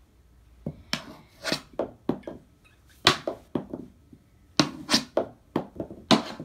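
Mini hockey stick stickhandling a small ball on a hardwood floor: a dozen or so sharp taps and clacks of the stick blade on the ball and floor, coming in quick irregular clusters.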